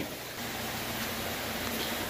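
Steady, even hiss of background room noise, with no distinct events.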